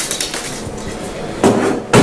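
Glass bottles and a bar spoon handled on a bar counter: a few clinks and knocks, the two loudest close together near the end.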